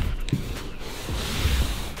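Handling noise from a carpet-covered ply panel being turned and held up, with soft carpet rubbing and a few light knocks, over a low background rumble of an open workshop front.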